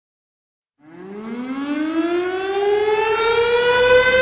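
Siren-like tone winding up: a single pitched tone starts about a second in, rises in pitch and grows louder, then levels off into a steady tone.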